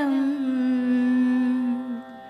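A woman's voice chanting a Sanskrit devotional hymn, holding one long steady note at the end of a line over a steady instrumental drone; the note ends near the end.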